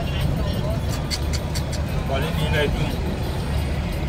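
Car driving along a paved road, heard from inside the cabin: a steady low rumble of engine and tyres, with a few light clicks about a second in and voices over it a little past two seconds in.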